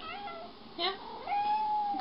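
Domestic cat meowing: a short call, then one long, drawn-out meow in the second half.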